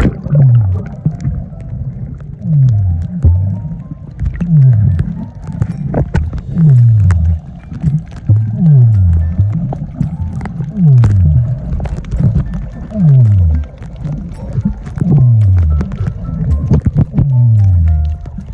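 Muffled sound recorded under water by a submerged phone while snorkelling. Low moaning tones fall in pitch, one about every second and mostly in pairs, over crackling clicks.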